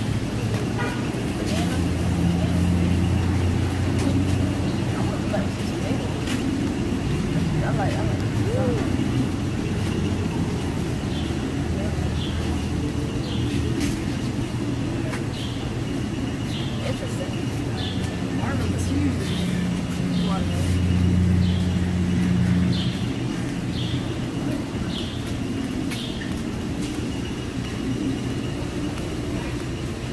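Outdoor ambience of a low, steady vehicle engine rumble that swells twice, with faint background voices and a run of short high chirps, a little over one a second, through the middle.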